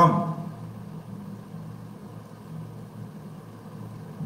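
A steady, even, low machine hum in the room, unchanging through the pause.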